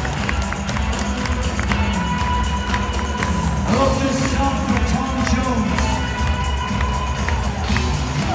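Live band music playing in an arena over a large crowd cheering and shouting.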